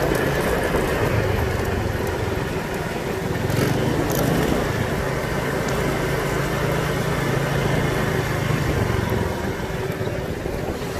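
Small motor scooter engine running at low road speed, a steady low hum over road and air noise, fading away near the end as the scooter slows to a stop.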